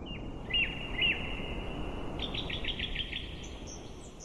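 Birds chirping over a steady outdoor background hiss: two short chirps about half a second and a second in, a quick run of about six chirps between two and three seconds in, and higher notes near the end, each ringing on briefly.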